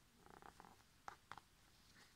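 Faint handling of stiff, glossy oracle cards being fanned out in the hand: a brief sliding rustle, then a few light clicks as the cards knock together.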